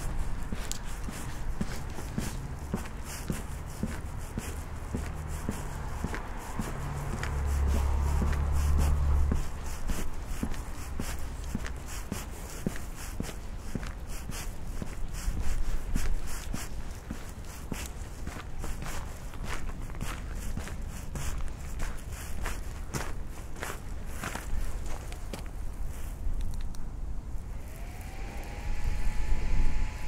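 Footsteps walking on a hard path, a run of short steps over a steady low rumble of wind on the microphone. Near the end a whine rises and then holds steady.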